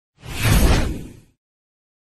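A whoosh sound effect for an animated logo intro graphic, with a deep rumble under it. It swells quickly and fades away over about a second.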